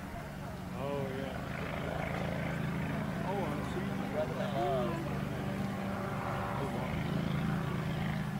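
Distant Legal Eagle ultralight's four-stroke V-twin Generac engine droning steadily in flight, growing louder about a second in.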